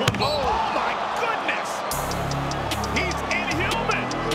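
Basketball game sound on a hardwood court: the ball bouncing, sneakers squeaking and crowd noise from the arena. A background music track with a steady bass line comes in about halfway.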